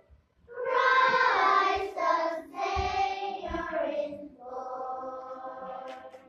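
A children's choir singing. The singing comes in about half a second in and turns softer for the last second and a half.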